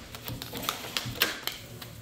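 A tarot deck being shuffled by hand: a quick, irregular run of card clicks and taps, loudest about a second in.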